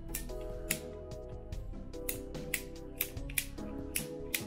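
Background music with a series of sharp, uneven clicks as a hand PVC pipe cutter is squeezed down through half-inch PVC pipe, roughly two or three clicks a second.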